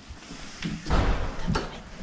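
Two dull thumps about half a second apart, the first about a second in, with a fainter knock just before them.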